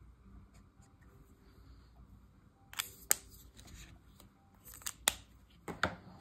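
Faint handling at first, then a handful of short, sharp clicks and taps from about three seconds in as an Olo alcohol marker is put down.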